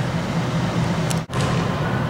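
Steady background hiss with a low hum between narrated lines, dropping out suddenly for an instant about a second and a quarter in, as at an edit.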